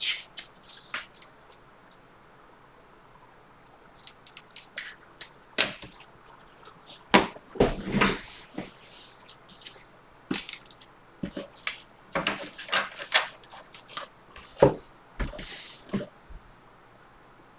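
Trading-card packaging and a stack of cards being handled and opened on a table: a scattered run of crackles, rustles and light taps, busiest in the second half.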